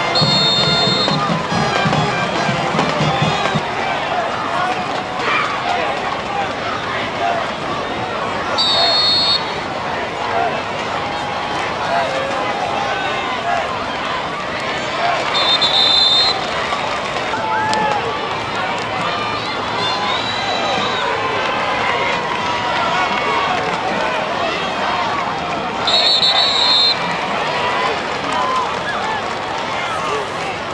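Football referees' whistles: four short shrill blasts, at the start, about nine seconds in, around sixteen seconds and near twenty-six seconds, over steady chatter and calls from the crowd in the stands.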